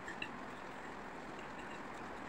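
A couple of faint, light clinks of metal cutlery against ceramic plates near the start, over a low steady hiss.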